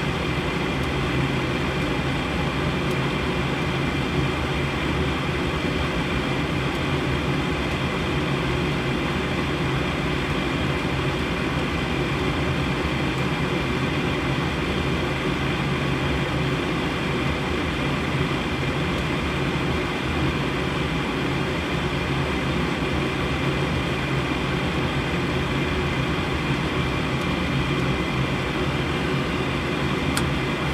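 A Goodman gas furnace's draft inducer motor running steadily with a low hum during the pre-purge, while the hot surface igniter heats up before the gas valve opens.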